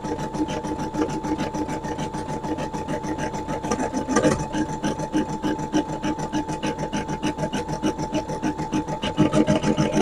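Embroidery machine stitching: a steady motor whine under a fast, even train of needle strokes. There is one louder knock about four seconds in.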